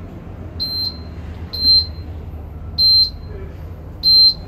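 Electronic beeper sounding a short, high beep about once a second, each beep followed by a quick second chirp, over a low steady hum.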